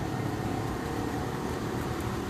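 Steady low outdoor rumble with no distinct events, typical of road traffic noise.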